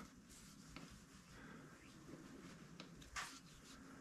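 Near silence: room tone, with one faint tick about three seconds in.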